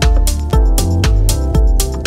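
Deep house music with a steady kick drum and bass about twice a second, ticking hi-hats and held synth chords.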